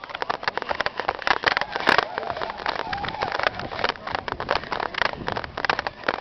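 Quick, irregular footsteps on stone stairs mixed with knocks and rustle of a handheld camcorder being jostled while its holder hurries upward. Brief voice-like sounds in the middle.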